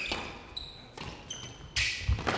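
A squash rally: the ball struck by rackets and smacking off the court walls a few times, the loudest hit near the end, with short high squeaks of players' shoes on the court floor.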